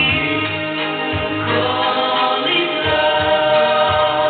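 A man singing into a handheld microphone over a karaoke backing track.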